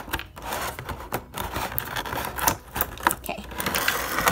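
Stiff clear plastic packaging being cut open and handled: irregular clicks, taps and crackles.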